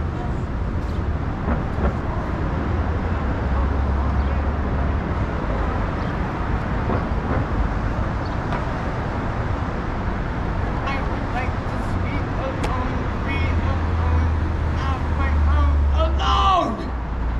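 Steady city street traffic noise, with a low engine rumble that swells twice as heavier vehicles pass, and faint voices in the background.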